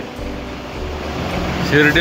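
Low, steady rumble of a car's engine heard from inside the car, a little louder from about a second in. A voice exclaims near the end.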